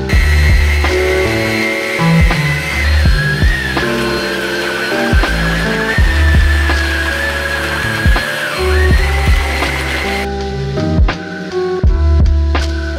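Background music with a steady beat, over the whine of a Hoover ONEPWR Evolve Pet cordless stick vacuum running. The vacuum cuts off about ten seconds in.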